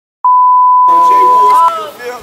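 A loud, steady electronic beep, one pure tone held for about one and a half seconds and cutting off abruptly, with voices starting up under it partway through.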